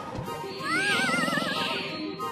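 A cartoon Vegimal's warbling call that rises and wavers for about a second, over background music.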